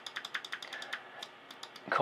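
Rapid clicking at a computer, from a mouse and keys, as clone-stamp strokes are made in Photoshop. The clicks come thick and fast for about the first second, then thin out.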